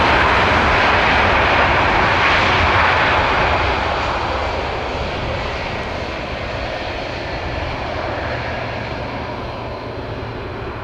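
Airbus A330-300's General Electric CF6 turbofan engines running as the airliner rolls along the runway: a loud, steady jet rush with a faint whine, fading from about four seconds in as the aircraft turns away.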